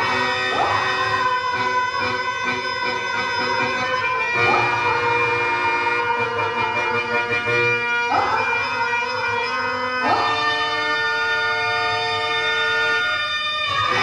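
Harmonium playing held melodic notes and drones, moving to new notes about half a second, four, eight and ten seconds in.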